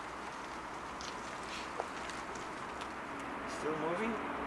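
Driverless Tesla Model S rolling slowly past at a crawl under Smart Summon: a quiet, steady rolling sound of tyres on asphalt with no engine note, over outdoor background noise.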